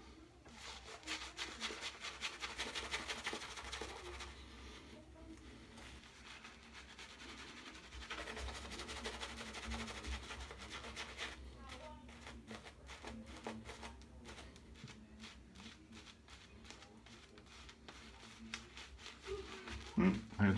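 Two-band badger shaving brush working lather on the face: a faint, quick rubbing and scratching of bristles against skin and stubble, stroke after stroke, with a couple of brief pauses.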